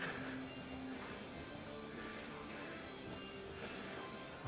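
Quiet background music with held notes that change every second or so.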